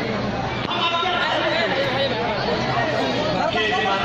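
A man's voice carried through a microphone and loudspeakers, over the chatter of a crowd.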